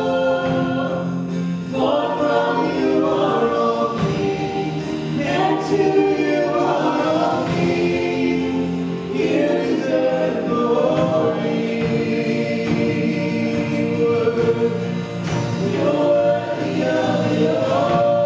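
Live contemporary worship song: a woman sings the lead into a microphone with many voices singing along, over acoustic and electric guitars, piano and drums.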